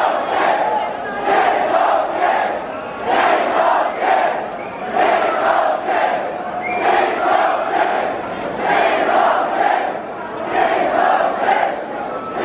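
Large nightclub crowd chanting together without music, the same short call rising and falling about once every two seconds.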